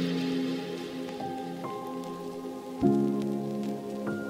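Slow ambient electronic music: sustained synth chords with a few single keyboard notes and a soft rain-like patter layered in. A new, louder chord enters about three-quarters of the way through.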